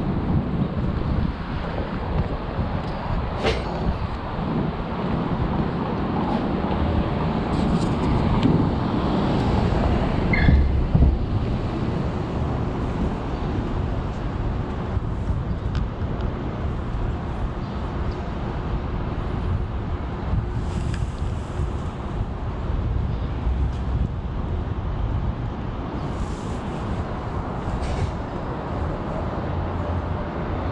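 City street traffic noise: a steady rumble of vehicles, swelling as one passes about ten seconds in.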